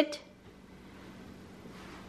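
A woman's one-word spoken command, "Sit," at the very start, then quiet room tone with a faint steady hum.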